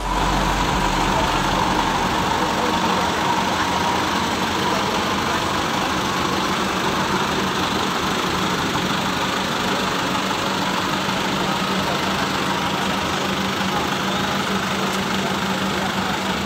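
Diesel engine of a medium-size intercity bus running steadily at close range.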